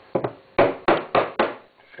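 Milk jug of freshly steamed milk knocked down on the bench about six times, a quick pair then four evenly spaced knocks, to settle the froth and burst large bubbles.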